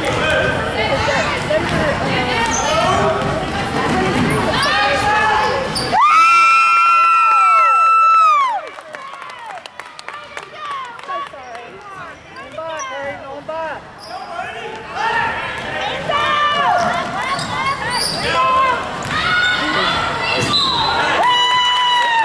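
Basketball game sounds in a gym: a ball bouncing on the hardwood with voices from the crowd and players. About six seconds in, a long steady high-pitched tone sounds for about two and a half seconds, and the gym is quieter afterwards.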